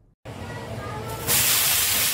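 Water splashed onto a hot tava griddle, sizzling and flashing to steam. A quieter hiss builds into a loud, steady hiss about a second and a half in.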